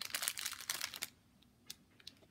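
Quick light clicks and rustling of rubber loom bands and small plastic parts being handled and rummaged through, over about the first second, then one more small click near the end.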